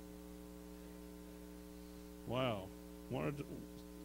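Steady electrical mains hum, with a short word or two from a voice about two and three seconds in.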